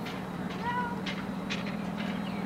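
A brief high-pitched call from a voice, rising and falling once, over a steady low hum and the general outdoor noise of a youth soccer match.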